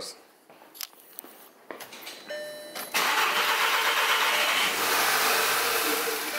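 The VW CC's 2.0 TSI turbocharged four-cylinder engine starting for the first time after its fuel injectors were replaced. A few faint clicks and a brief whine come first, then about three seconds in the engine catches and runs at a loud, steady idle that eases slightly near the end.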